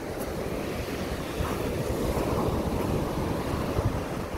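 Sea waves breaking and washing up a gravel-and-pebble beach, a steady surf that swells a little in the middle, with a low rumble of wind on the microphone.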